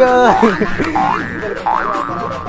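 A cartoonish comedy sound effect, its pitch sliding down and back up a few times before settling on a held tone.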